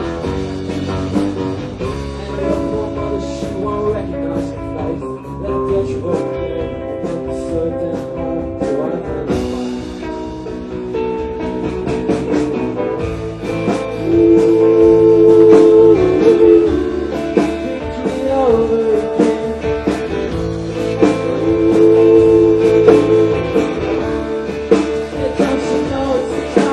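Live rock band playing: electric guitars over a drum kit, getting louder about halfway through.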